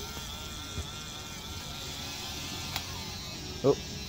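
A handheld battery-powered toy bubble gun's small motor whirring steadily, with a slightly wavering whine, as it blows a stream of bubbles.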